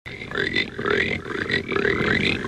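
A voice making short repeated calls, about three a second, each sliding up in pitch.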